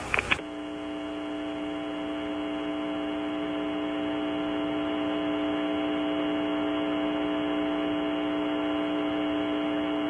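Steady electrical hum made of several unchanging tones, with one low tone the strongest, heard on a narrow radio-quality audio line. It begins about half a second in and grows slowly a little louder.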